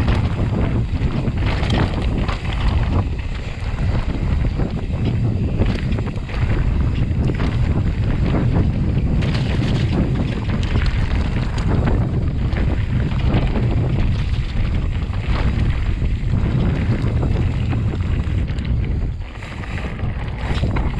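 Wind rumbling on an action camera's microphone during a fast mountain bike descent, with the tyres running over dirt and the bike clattering often over roots and rocks.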